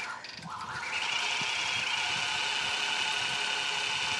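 Longarm quilting machine stitching: a steady high whir of the needle running. It dips briefly near the start, then picks back up and runs evenly.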